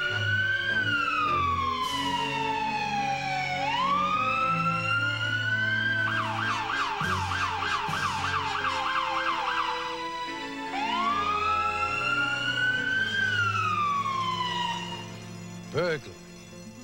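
Police car electronic siren on an emergency run: a slow rising and falling wail, switching about six seconds in to a fast yelp of about three warbles a second, then back to the wail, which fades out near the end.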